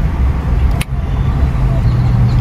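Steady low rumble of a car engine running, heard from inside the cabin, with a single short click just under a second in.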